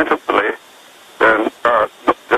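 Speech only: a man talking in two short phrases, with a narrow, telephone-like sound.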